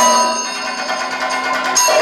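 Kathakali chengila, a bell-metal gong, struck with a wooden stick: one strike at the start rings on and fades, and another strike comes near the end.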